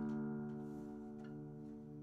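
Acoustic guitar strings ringing out after a strum, a sustained chord slowly fading away.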